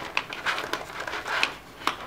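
A plastic snack bag crinkling and rustling as fingers pull shredded dried squid out of it, with a few irregular sharp crackles.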